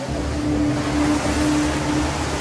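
Churning, rushing water with a low rumble, starting suddenly, and a steady low hum held over it.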